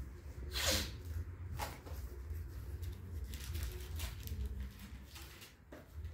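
Rustling and handling noises: several short brushing sounds over a steady low rumble.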